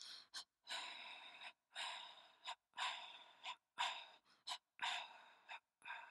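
A person breathing hard and rhythmically through an open mouth, about one breath a second, each long breath followed by a short sharp catch of air.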